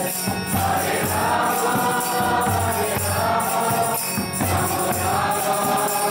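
Kirtan: a group of voices chanting together in call-and-response style, with jingling hand cymbals keeping a steady rhythm.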